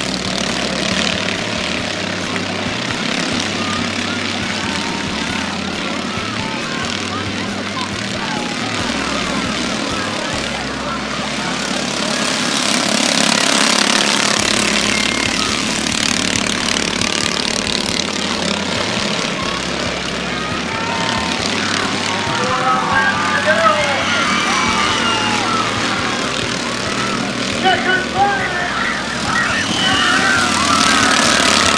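Engines of half-size minicup stock cars running laps around a short oval, swelling louder about midway as the cars come by. Under them is the chatter of a crowd of children, with voices rising toward the end.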